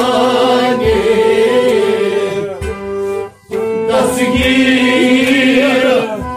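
Kashmiri Sufi song: a male voice sings a devotional kalam over instrumental accompaniment, with a low beat recurring about every two seconds. The music briefly drops out about three and a half seconds in.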